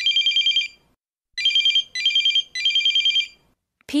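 Telephone ring: a high, rapidly trilling electronic ring in short bursts. One burst comes at the start, then after a gap a group of three, each under a second long. It is the ring that opens a phone-call dialogue.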